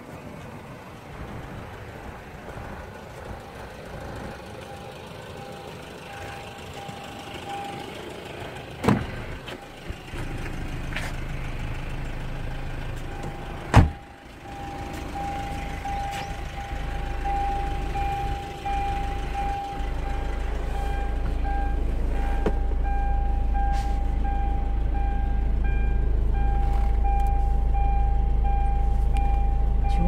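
Hyundai Santa Fe's door-open warning chime beeping in a steady repeating pattern, a sign that the driver's door is open with the key in. It stops for a few seconds, two sharp thumps come partway through, and a low rumble grows louder in the second half.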